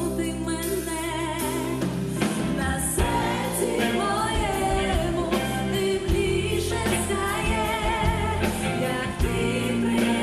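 A woman singing a pop song with vibrato, backed by a live band of drums, electric guitar and keyboards.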